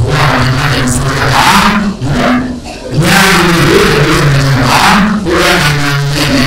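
A man speaking into a handheld microphone, with a short pause about two and a half seconds in.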